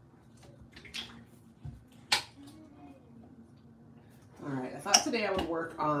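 Two or three light, sharp clicks of small objects being handled on a tabletop, then a woman starts speaking a little over halfway through.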